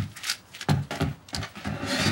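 A few footsteps on a hard floor, short irregular knocks about a third of a second apart, as a woman walks quickly away.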